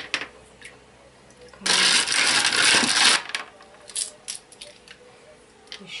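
A handful of smooth pebbles rattling and clinking against each other for about a second and a half, followed by a few light clicks as stones are set down on the bottom of an aquarium.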